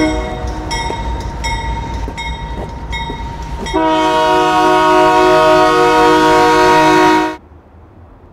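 Train horn sounding at a railroad crossing, with the crossing bell dinging at a steady pace of about one strike every 0.7 seconds. About four seconds in a long, loud multi-note horn blast starts and is held, then cuts off suddenly near the end.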